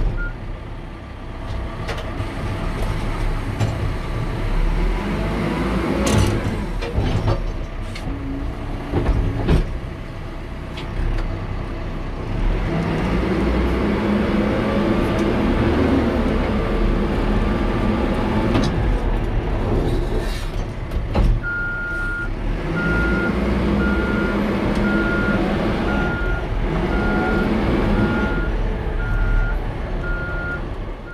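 Caterpillar 420F IT backhoe loader's diesel engine running under load as the machine drives around, the engine note rising and falling a few times in the first half. From about two-thirds of the way in, its back-up alarm beeps steadily about once a second as the machine reverses.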